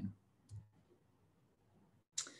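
A single faint click about half a second in, typical of a computer mouse click advancing a presentation slide, against near silence.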